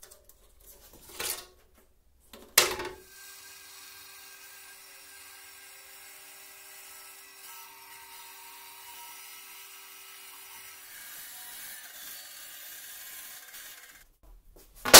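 Band saw running and cutting through a thin sheet: a sharp knock about two and a half seconds in, then a steady hum with several even tones, which gives way to a plainer hiss about eleven seconds in.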